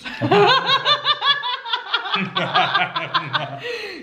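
A man and a woman laughing together: a long run of short, quick laughs.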